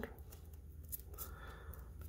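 Faint rustling and light scraping of trading cards being slid off a stack and handled, with a few soft ticks.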